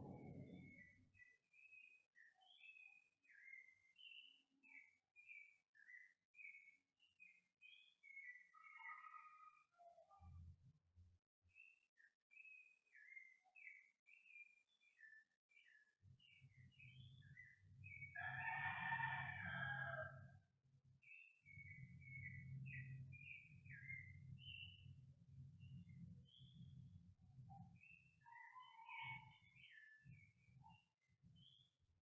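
Faint bird calls outside: short chirps and twitters repeat throughout, and one louder, longer call of about two seconds comes roughly two-thirds of the way in. A low steady hum starts about halfway through and continues.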